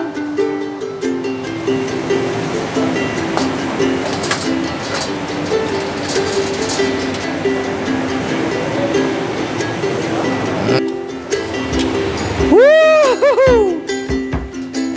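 Background ukulele music with a steady plucked melody. Near the end it is joined by a comic sound effect of a few arching sweeps that rise and fall in pitch.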